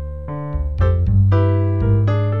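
Roland Juno-D workstation playing a factory-preset electric-piano-like keyboard patch: chords struck about every half second over a held bass note.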